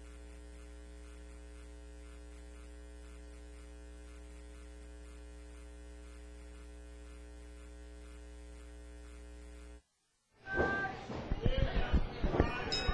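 Faint, steady electrical mains hum with a buzz of its overtones, cutting off abruptly about ten seconds in. After a moment of silence, voices come in near the end.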